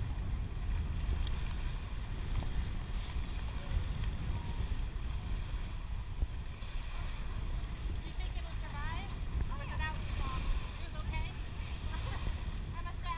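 Steady wind rumbling on the microphone at the shoreline, with faint distant voices of people talking in the second half.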